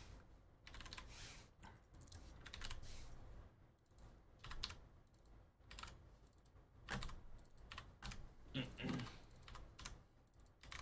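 Typing on a computer keyboard: faint, irregular key clicks in short runs.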